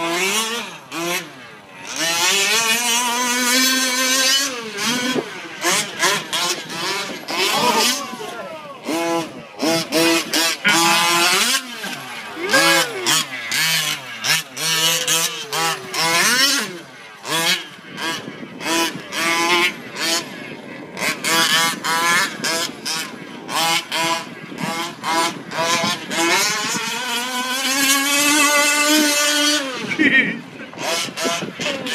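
Two-stroke gas engine of a 1/5-scale short course RC truck, very loud, revving up and down as the throttle is worked around the dirt track. It keeps cutting off on throttle lifts and makes a long rising pull near the end.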